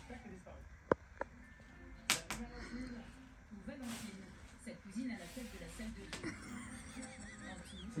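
Faint voices and music from a television in a quiet room, with a few sharp clicks and a knock in the first couple of seconds.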